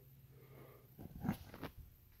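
Quiet room tone, then a few soft, short breath and mouth sounds from a man pausing mid-sentence, about a second in.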